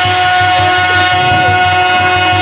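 Live stage-drama accompaniment: sustained held notes from a reed instrument over a fast hand-drum rhythm of about six beats a second on tabla-type drums.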